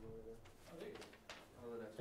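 Quiet meeting room with faint, low murmured voices: a short hummed "mm" at the start and soft fragments of speech, with louder speech starting near the end.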